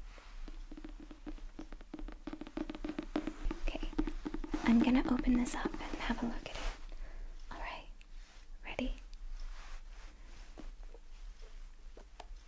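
A soft voice humming a held note and whispering, with many quick light taps and handling noises on a hardcover book during the first few seconds.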